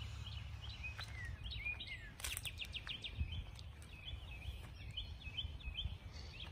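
Songbirds chirping in the background: short chirps repeated about three a second, with a quick trill about two seconds in, over a steady low rumble.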